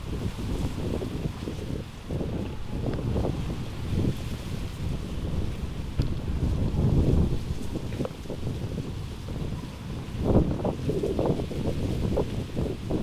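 Heavy wind gusting and buffeting the microphone: an uneven low rush that swells and eases, with the strongest gust a little after ten seconds in.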